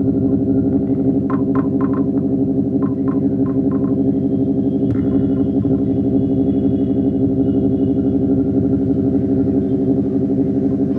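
Music: a dense, steady low drone with a pulsing texture, overlaid by short high notes in quick clusters during the first few seconds and a faint high held tone in the middle.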